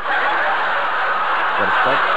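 A loud, steady rushing noise that starts suddenly, with faint chuckling through it.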